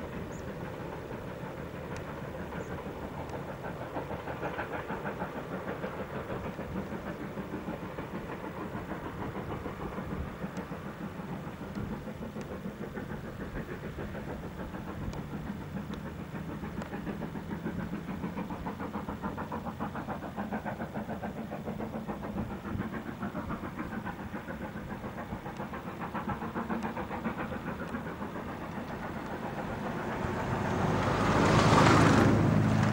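Distant LMS Princess Royal class 46203 Princess Margaret Rose, a four-cylinder 4-6-2 steam locomotive, working a passenger train under steam. Its exhaust beats come as a fast, steady rhythm.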